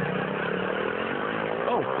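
Small motorbike engine running at a steady drone, its pitch easing slightly, from off in the dark.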